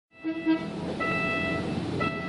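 Level-crossing warning signal sounding a steady electronic tone in repeated pulses, about one a second, with a short, louder, lower-pitched toot near the start.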